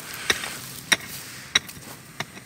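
A small wooden-handled digging tool chopping into dry soil: three sharp strikes about half a second apart, the last one doubled.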